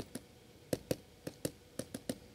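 Stylus tapping on a pen tablet as short dashes are drawn: a quiet, irregular string of about ten sharp clicks.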